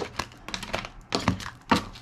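A deck of tarot cards being shuffled and handled by hand, giving about half a dozen short, sharp card snaps and taps at irregular intervals.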